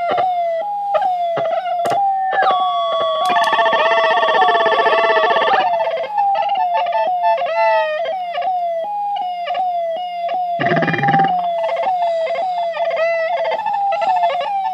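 Ciat-Lonbarde Plumbutter analog synthesizer in a feedback patch where each module drives another's rhythm, playing a looping pattern of short blips that slide down in pitch about twice a second over a steady low hum. A held cluster of steady tones sounds from about two to six seconds in, and a brief low rumbling burst comes near eleven seconds.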